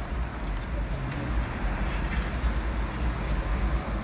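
City street traffic noise: a steady wash of vehicle sound with a deep, uneven rumble.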